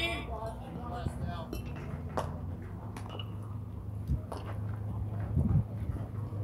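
A voice calling out right at the start, then faint distant voices with a few scattered sharp knocks over a steady low rumble.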